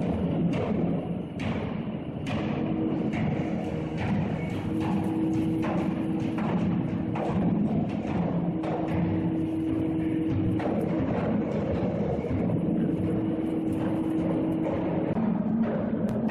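Coopers hammering steel hoops onto oak whisky casks: many irregular hammer blows on metal and wood, with steady musical tones held underneath.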